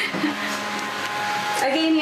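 Steady whirring of a train lavatory's exhaust fan, with a constant low hum underneath.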